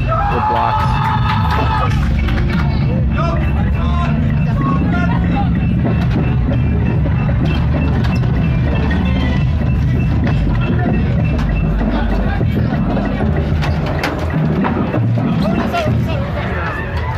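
Percussion equipment being unloaded from a truck: wheeled carts and cases rattling and knocking on a metal ramp, many sharp knocks over a steady low rumble.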